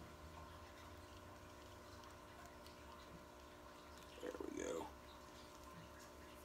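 Faint room tone with a steady low hum. About four seconds in, a man gives a short low grunt lasting about half a second.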